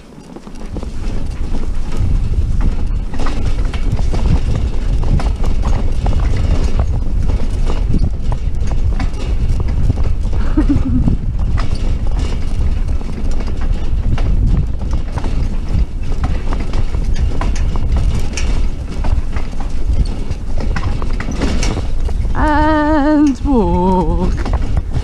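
Horse cantering on a grass track, hoofbeats drumming with the rattle of a light driving carriage, over a steady low rumble that builds up about a second in. A wavering voice-like call comes near the end.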